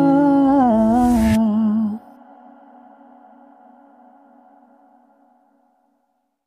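The song's closing sung note, a male voice holding the word "my" with a wavering pitch over the accompaniment. It cuts off sharply about two seconds in, and a faint echoing tail of the note fades away over the next few seconds.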